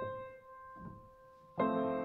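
Slow, quiet piano music: a held note fades away, then a fuller chord with lower notes is struck about one and a half seconds in.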